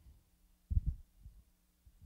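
Microphone handling noise: a few low, muffled thumps, the loudest about three quarters of a second in, over a faint steady electrical hum.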